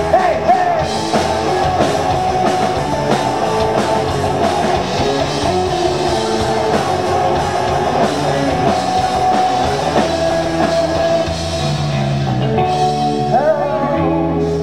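Rock band playing live, a continuous full-band passage at steady loudness.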